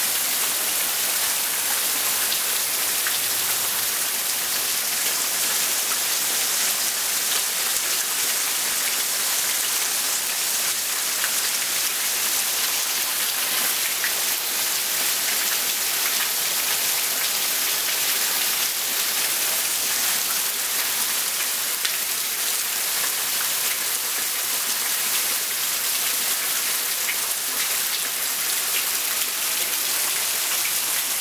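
Steady rain falling on a street and lawn: an even hiss of many small drops.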